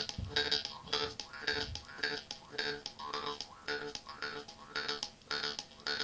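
Jaw harp (vargan) played over a steady drone, plucked in a regular rhythm of about three twangs a second, its bright overtones swelling and fading with each pluck.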